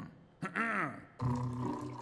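A cartoon character's wordless vocal sounds: a short falling grunt, then a rising-and-falling 'hmm'. About a second in, a steady held tone takes over.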